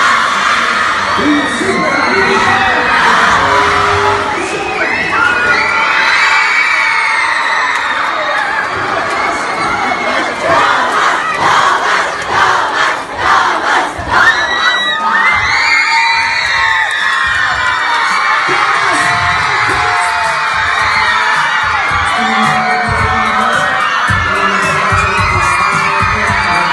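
A large crowd of young fans screaming and cheering, many high-pitched voices overlapping without a break.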